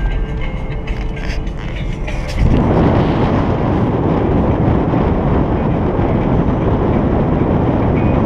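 A car driving along a road, first heard as a low hum inside the cabin; about two and a half seconds in it jumps to a loud, steady rush of wind and road noise as the camera is moved out of the open car window.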